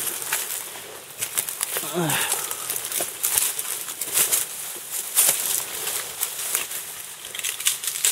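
Branches and leaves rustling and crackling in quick, irregular brushes as climbers with packs push through dense brush. A short voice sounds about two seconds in.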